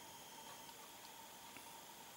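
Near silence: faint steady room-tone hiss with a faint high steady tone.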